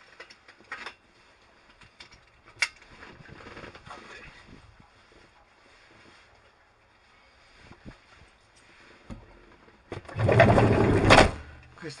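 Handling noise from a hand gripping the cockpit-mounted camera: a loud rubbing rustle lasting about a second near the end. Before it there are only faint rustles and one sharp click.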